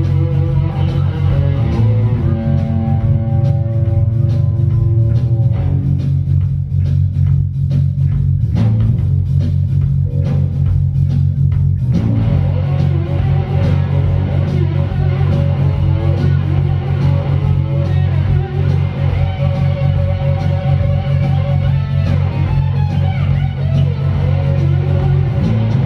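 Live blues-rock band playing an instrumental passage: electric guitar over bass guitar and drums. The guitar's held notes thin out about six seconds in and the band fills out again about halfway through, under a steady, heavy bass line.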